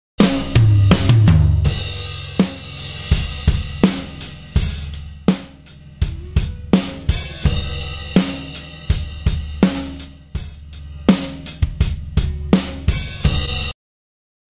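Multitrack acoustic drum kit recording playing back, with kick, snare, toms and cymbals, and a heavily compressed and distorted parallel 'crush' bus blended in under the dry drums. The crush bus is turned down a few dB during playback, and the drums stop abruptly near the end.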